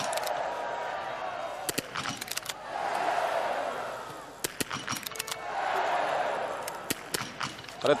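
Small-bore .22 biathlon rifles firing in quick succession: sharp single cracks from two shooters on the range, the shots interleaved irregularly. Crowd noise rises and falls in three swells as the targets are hit.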